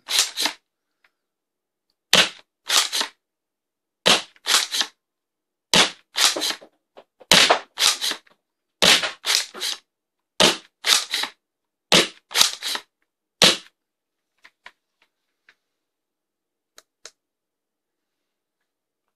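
Worker Seagull spring-powered foam dart blaster, with a 310 mm barrel and its long spring, fired repeatedly: a quick cluster of sharp clacks about every one and a half seconds, nine times. A few faint clicks follow near the end.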